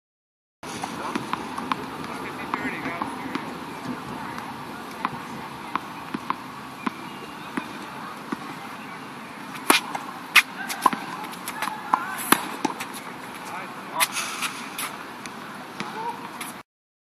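Tennis balls struck by rackets and bouncing on an outdoor hard court: a series of sharp pops, with the loudest run of hits between about ten and fifteen seconds in, over steady outdoor background noise.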